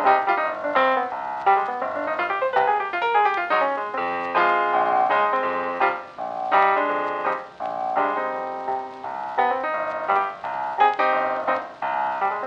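Background piano music, with notes struck in quick successive runs.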